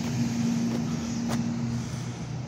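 A steady low motor hum over a wash of outdoor noise, the hum stopping near the end.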